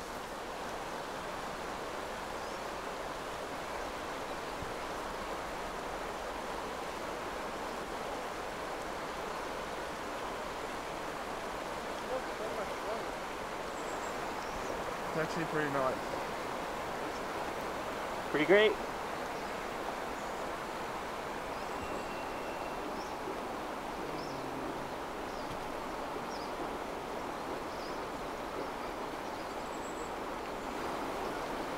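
Steady rushing of a river's water. A few short voice sounds rise above it about halfway through, the loudest at about 18 seconds.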